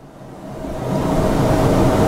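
A loud, steady rushing rumble that swells up over about the first second and then holds.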